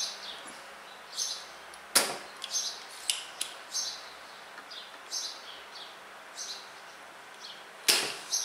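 Faint, short, high chirps of a small bird repeating every half second to a second, with two sharp clicks, one about two seconds in and one near the end.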